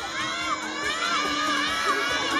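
A crowd of young children calling out and cheering all at once, many high voices overlapping, as the audience reacts to a quiz picture being shown.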